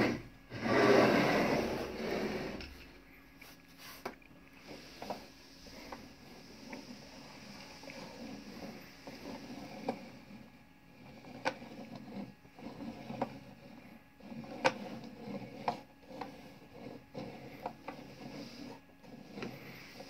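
A wooden driftwood automaton being turned round on a table with a scraping rub. Its hand crank is then worked, giving quiet, irregular clicks and knocks from the wooden mechanism, with a few sharper knocks.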